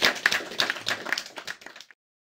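A small audience applauding with individual hand claps, the clapping thinning out and then cutting off abruptly near the end.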